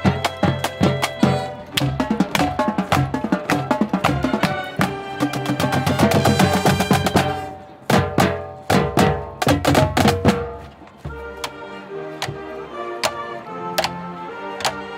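A marching band playing live: snare, tenor and bass drums beating sharp strokes under held brass and wind chords. There is a fast roll of drum strokes near the middle. In the last few seconds the drums thin out to occasional hits under sustained horn chords.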